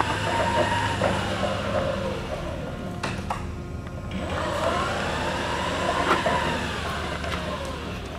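Mitsubishi FB16NT battery-electric forklift driving around, its electric drive motor whining in a pitch that rises and falls twice as it speeds up and slows, over a steady low hum. A single click about three seconds in.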